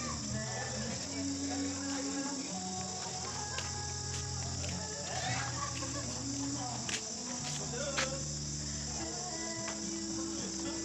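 A steady, high-pitched evening insect chorus, with low held notes of music underneath and faint voices.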